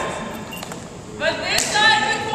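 Indistinct talking among a group of people in a gymnasium, fairly quiet for about the first second, then a voice starts up.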